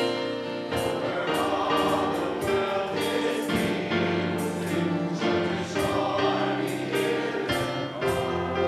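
Choir singing a slow hymn with piano accompaniment, sustained chords changing every second or two.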